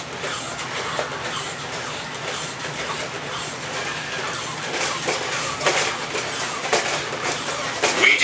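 Several WowWee Robosapien RS Media toy robots walking on a concrete floor: a steady whir and rattle of their geared motors, with sharp clacks of their plastic feet a few times.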